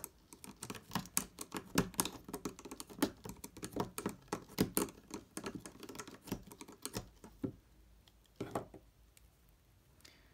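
Plastic clicking and tapping of a Rainbow Loom hook against the loom's plastic pegs as rubber-band loops are lifted off the loom. Quick, irregular clicks that thin out to a few scattered taps near the end.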